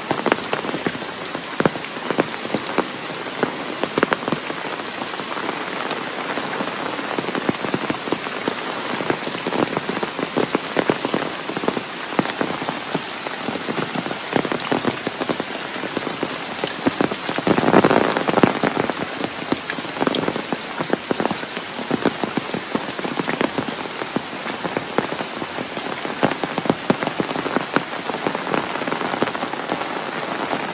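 Heavy rain falling steadily on forest foliage and a wet path, with many sharp close drop hits. It swells louder for a second or two a little past halfway through.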